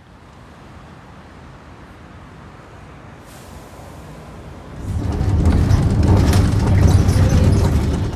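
Street traffic rumble, growing slowly and then loud for the last three seconds, as of vehicles passing close by.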